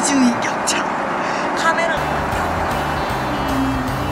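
Steady rushing noise of an airliner cabin, with brief bits of a woman's soft voice near the start. Background music with a low bass line comes in about halfway.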